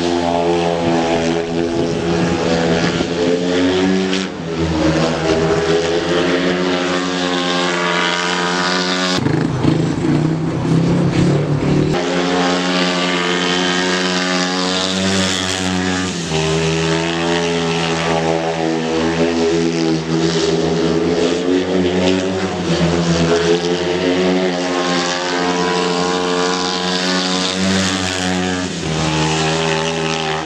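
Speedway bike's single-cylinder engine lapping a shale track, loud throughout. Its note rises and falls again and again as the rider shuts off into the bends and opens up out of them. About nine to twelve seconds in there is a rougher, noisier stretch.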